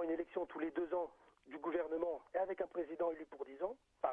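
Speech only: a listener talking on continuously, his voice narrow and cut off at the top as over a telephone line.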